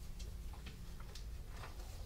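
Irregular small clicks and ticks over a steady low room hum.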